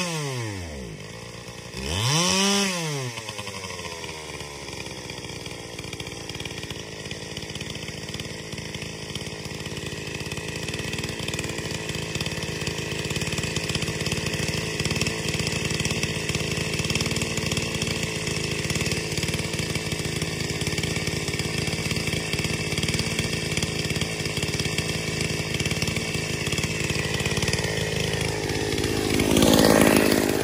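Ported Dolmar 116si two-stroke chainsaw with a 25-inch bar: one quick rev up and back down a couple of seconds in, then idling steadily, then revved up and back near the end. The fresh plug's colour after the last run was judged probably slightly rich.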